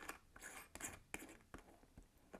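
Faint, scattered small clicks and scrapes of a Nixon watch's screw-on metal case back being threaded onto the case by hand.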